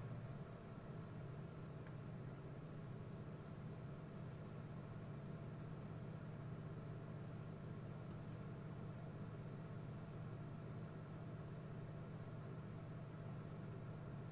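Faint, steady low hum with a light hiss: background room tone picked up by an open microphone, with no speech.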